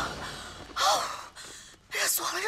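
A woman's short, breathy gasp with a rise and fall in pitch, about a second in, followed by fainter breathing: she is out of breath and overheated.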